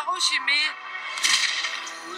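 A short spoken line, then a sudden sharp crack about a second in with a hissing tail that fades quickly, over steady background music.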